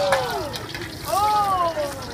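A hot wok sizzling over a high flame during stir-frying, with people's voices over it.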